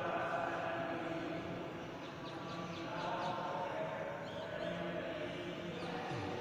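Faint, distant chanting voices, steady and drawn out, underneath a pause in the talk.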